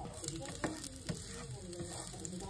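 Minced garlic sizzling as it hits hot oil in a nonstick pan, the hiss rising as it goes in. The garlic is stirred with a spatula, with a couple of light taps partway through.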